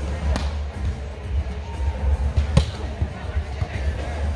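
A volleyball struck twice during a rally, two sharp slaps about two seconds apart, over a steady low rumble in a large hall.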